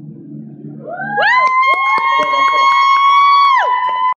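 A low drone, then about a second in several high, pure-sounding tones slide up one after another, hold steady together, and slide down near the end, with scattered clicks.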